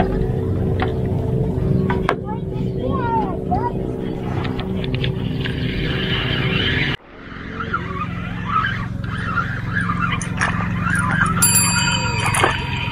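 A motor running with a steady low hum. It breaks off abruptly about seven seconds in, and a lower steady hum carries on with higher chirping sounds over it.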